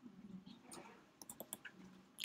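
Near silence with a few faint clicks from a computer mouse or trackpad as text is selected and right-clicked, bunched together a little past halfway.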